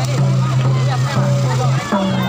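Group singing and crowd voices of a Tharu folk dance procession, over a steady low hum that breaks every half second or so, with a motorcycle engine running close by.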